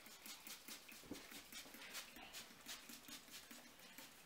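Fingertips rubbing and patting a close-cropped scalp during a head massage: a faint, quick, uneven run of soft scratchy strokes, several a second.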